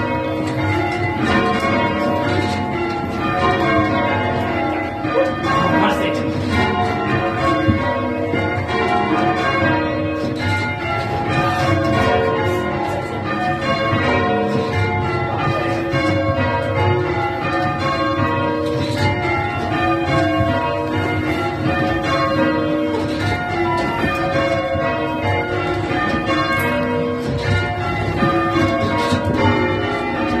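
Church tower bells rung full circle in change ringing: a steady, even stream of bell strikes, one bell after another in rows. They are heard from the ringing chamber below the bells.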